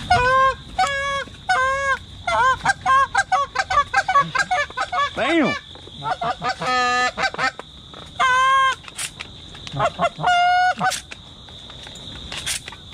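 Canada geese honking: a run of loud, repeated two-note honks and quicker clucks, with one long drawn-out honk about midway, over a steady high insect drone.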